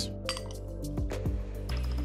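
A few light clinks of small glass prep bowls as red pepper flakes are tipped into a glass mixing bowl and the empty bowl is set down, over steady background music.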